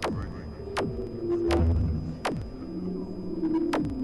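Experimental electronic noise: a series of fast falling sweeps, each diving from a very high pitch to a low one, about five of them, mostly three quarters of a second apart. Under them runs a low, wavering drone, with a thin steady high whine on top.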